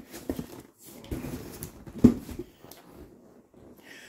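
Cardboard box being opened by hand and its contents handled: irregular rustling and scraping with small knocks, the loudest a sharp knock about two seconds in.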